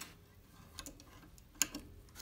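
A few light clicks and taps of a small metal tool and fingers against the strings and headstock hardware of a Schecter bass guitar, with one sharper click about one and a half seconds in.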